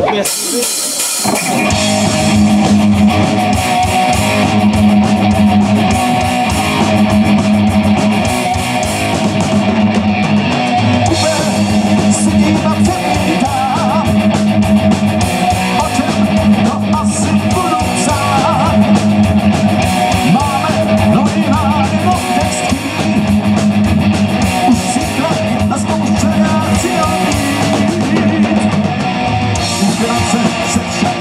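Live rock band playing a song at full volume on amplified electric guitars, bass guitar and drum kit, kicking in about a second in.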